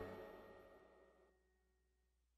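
Near silence: the last of the background music fades out in the first half second, then nothing.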